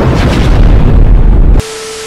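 Explosion sound effect: a loud deep boom with a long rumble that cuts off abruptly about a second and a half in, followed by a short steady tone.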